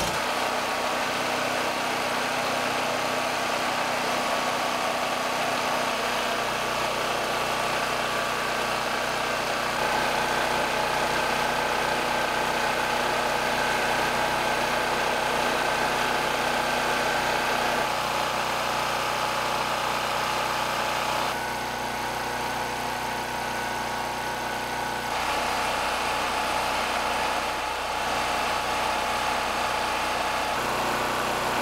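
Small portable gasoline generator engine running steadily under electrical load from a space heater. The tone and level shift abruptly a few times.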